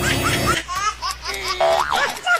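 High-pitched laughter in quick rising bursts. A music bed under it cuts off about half a second in, and near the end a tone slides up and back down.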